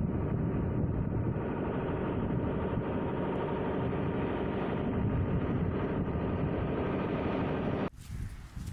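Strong cyclone wind blowing steadily and buffeting the microphone, a dense low rushing noise; it cuts off abruptly just before the end.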